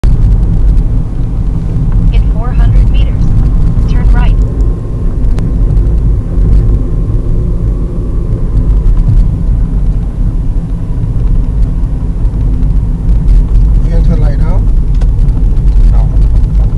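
Steady low rumble of a car's engine and tyres heard from inside the cabin while driving, with a few brief voice fragments near the start and again near the end.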